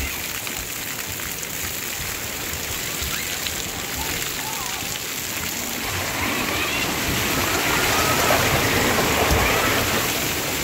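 Water spraying and pattering steadily from the jets and pouring streams of a water-park splash-pad play structure, with children's voices calling in the background that grow louder from about halfway through.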